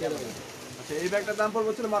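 A man's voice speaking in a low pitch, starting about a second in.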